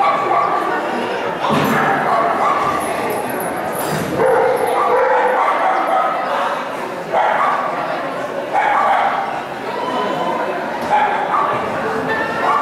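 A dog barking and yipping repeatedly, echoing in a large indoor arena.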